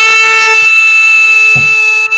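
A man's voice holding one long, loud, steady note, the drawn-out 'Goooood' of a shouted 'good morning' greeting; it slides up into pitch at the start and breaks off just before the word 'morning'.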